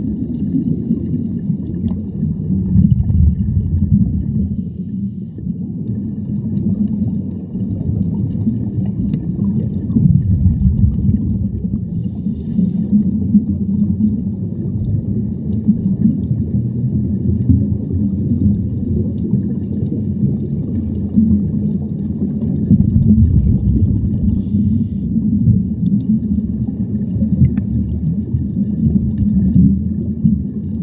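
Muffled underwater sound heard through a camera housing on a scuba dive: a low rumble of water and divers' exhaled bubbles that swells and fades several times.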